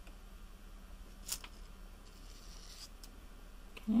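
Faint rubbing and scraping as a stiffened leather strip is drawn through a hole in a heated metal tube-making tool, with one short, sharper scrape about a second in.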